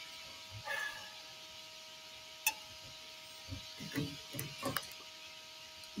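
A quiet stretch with a faint steady high whine throughout, a single sharp click about two and a half seconds in, and a few soft, short low mutters from a person in the second half.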